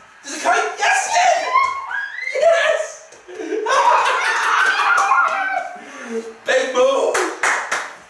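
A man and a boy shouting and cheering wordlessly in celebration, with a long held shout midway and a quick run of handclaps near the end.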